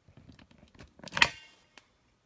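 Handling noise from the recording phone, with faint taps and rubbing, then one sharp knock a little over a second in as the phone is moved.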